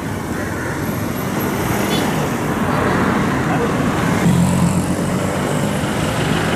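Road traffic noise: a steady rush of passing cars and buses, with a low engine drone growing stronger about four seconds in.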